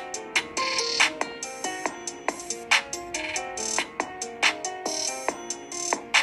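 Electronic intro music: a steady beat of sharp percussive hits under a bright melody of short stepping notes.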